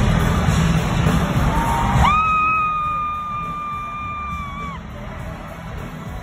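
Loud arena concert din of music and crowd. About two seconds in it drops away and a single high voice holds one long note for nearly three seconds, sliding up into it and dipping at the end, over a continuing low bass rumble.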